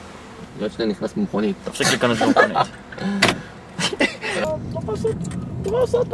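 Several voices calling out and chattering in short bursts, with a few sharp knocks in between and a steady low hum underneath.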